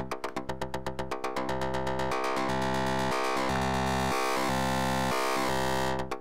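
Synthesizer sequence from Reaktor Blocks: two sequenced oscillators through low pass gates in Snappy mode, playing short plucked notes at about eight a second. About a second and a half in, the notes lengthen and run together into a sustained buzzing tone as the gate is opened up, then snap back to short plucks at the end.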